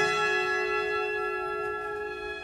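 Orchestral music from an opera score: a held chord with ringing, bell-like tones, fading slowly after a loud climax.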